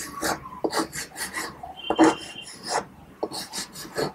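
Chalk scraping on a chalkboard in a series of short, uneven strokes as small figures are drawn.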